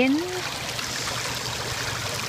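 Shallow creek running over a stony, pebbly bed: a steady rush of flowing water.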